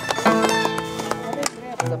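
Violin and Andean harp playing a tune, with sharp knocks scattered among the notes.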